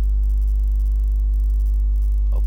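Steady low electrical mains hum with a faint hiss underneath, unchanging throughout.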